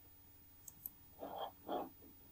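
Quiet computer mouse clicks: a light, sharp double click a little before the middle, then two duller clicks in the second half.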